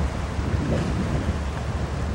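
Wind rumbling steadily on the microphone, over small Lake Erie waves washing against the shore.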